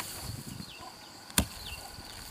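A hoe blade chops into grassy soil once, sharply, a little past halfway, with softer low thuds near the start. Behind it runs a steady high insect whine, with short falling chirps now and then.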